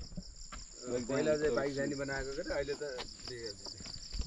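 A steady, high-pitched insect chorus that runs unbroken, with a man's voice talking quietly in the middle.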